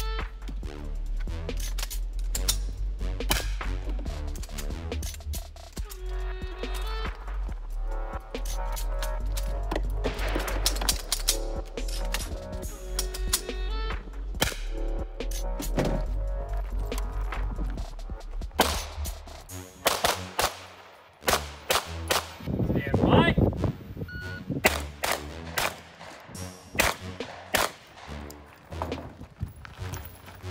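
Background music with a steady bass line under rapid gunshots from a 9mm pistol-caliber carbine and pistol. Over the first half the music is the main sound and shots break through it now and then. After about 18 seconds the bass drops away and quick strings of sharp shots take over.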